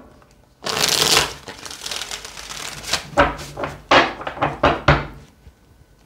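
A tarot deck shuffled by hand. A dense rustle of cards sliding through each other starts just under a second in, followed by a run of short, sharp card clicks from about three to five seconds.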